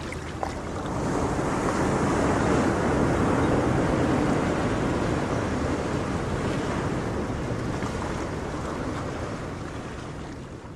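Ocean surf: a wave's rush of water swells over the first couple of seconds, then slowly washes back and fades.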